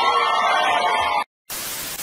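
A held pitched tone that glides up and then stays level, cutting off abruptly just over a second in. After a brief silence comes a burst of TV static hiss.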